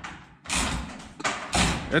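Two heavy thuds about a second apart as a John Deere 6210R tractor cab, hoisted by a chain from the rafters, shifts and breaks free of its mounts.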